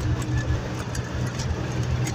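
Bus engine running steadily at speed with road noise, heard from inside the cab.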